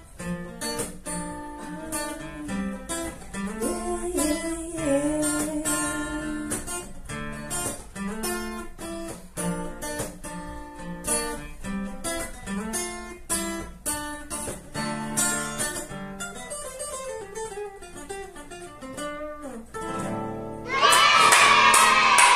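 Acoustic guitar played solo: a fast melodic run of single picked notes and chords. About a second before the end, the playing is overtaken by a sudden louder burst of voice and clapping.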